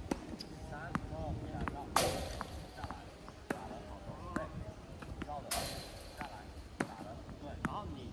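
Tennis balls being struck with rackets and bouncing on a hard court: a run of sharp knocks, with three louder, longer noisy strokes about three seconds apart. Faint voices in the background.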